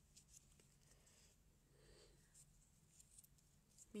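Near silence, with a few faint small ticks and a soft rustle as a crochet hook draws yarn through a double crochet stitch.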